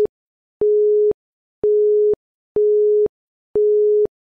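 Electronic countdown-timer beeps: a single steady mid-pitched tone about half a second long, repeated about once a second, each beep starting and stopping abruptly.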